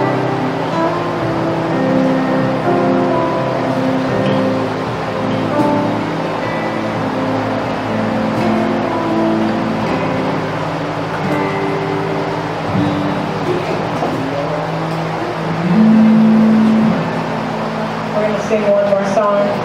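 Live acoustic worship music: an acoustic guitar strummed under women's voices singing into microphones, with a louder held note near the end.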